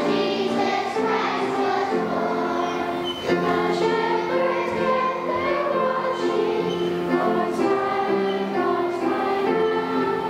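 Children's choir singing a song, steady and without pauses.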